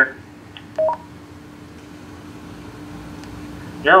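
Motorola XPR 4550 DMR mobile radio giving a short two-note rising beep about a second in, just after an incoming transmission ends, then a faint steady hum from its speaker until the next station's voice comes through near the end.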